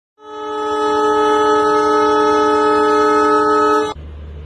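Train horn sounding one long, steady blast of several tones together, swelling up just after the start and cutting off sharply just before the end.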